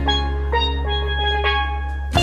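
A single lead (tenor) steel pan struck with mallets, playing a few ringing notes spaced out over about a second and a half. A steady low bass note is held underneath, with no beat until just after the end.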